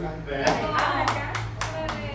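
Hand clapping: distinct claps starting about half a second in, roughly three or four a second, with voices talking.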